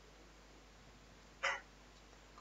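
Faint room tone, broken about one and a half seconds in by one brief, sharp mouth or breath sound, like a hiccup, close to the microphone.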